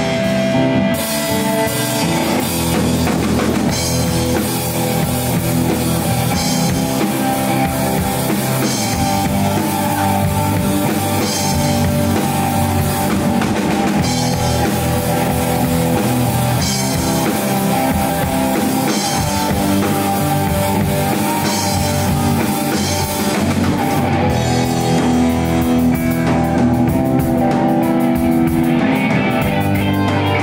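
Live rock band playing with amplified electric guitars and a drum kit keeping a steady beat.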